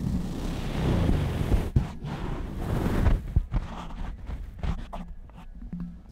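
Foam windscreen being twisted onto a Deity S-Mic 3 shotgun microphone, heard through that same microphone: close rubbing and rustling handling noise with low rumbles and a couple of knocks, easing off in the second half.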